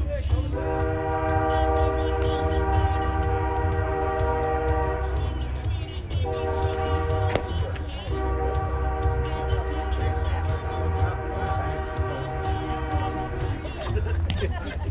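Train horn sounding two long blasts, the first about five seconds and the second about seven, each a steady chord of several notes. A steady low rumble runs underneath.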